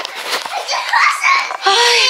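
A young child's high-pitched babbling and vocalizing, then a woman's short 'Ay' near the end.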